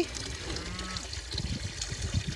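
A cow drinking from a plastic stock tank, slurping at the water while the refilling line trickles in. A faint low moo sounds about half a second in.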